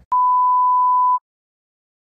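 A single steady electronic beep, a pure tone like a censor bleep, lasting about a second after a brief click. It cuts off abruptly into dead silence.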